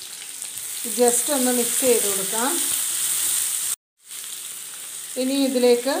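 Sliced onions and green chillies frying in an aluminium kadai, a steady sizzle, stirred with a wooden spatula. The sound cuts out completely for a moment just before four seconds in.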